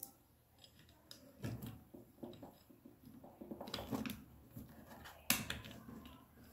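Faint handling noises of small metal and plastic air-compressor parts, the piston and cylinder, being fitted together by hand: scattered light clicks and rubs, with one sharper click a little past five seconds.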